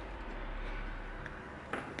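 Quiet background: a steady low hum under a faint hiss, with no distinct sound standing out.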